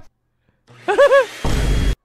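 Cartoon soundtrack effects: two short arching pitched notes about a second in, followed by a half-second deep rumbling whoosh that cuts off suddenly.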